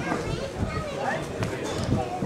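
Indistinct chatter of several voices from spectators around the field, with no clear words.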